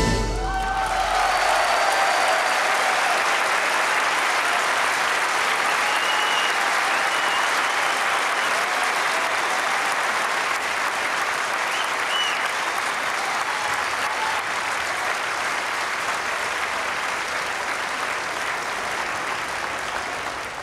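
The song's last notes die away in the first two seconds, then a large concert-hall audience applauds steadily, with a few high calls rising above the clapping.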